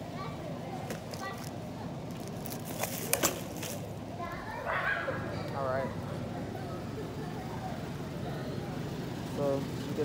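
Shopping cart rolling through a store aisle with a steady low rumble, a sharp rattle and clicks about three seconds in, and indistinct voices now and then.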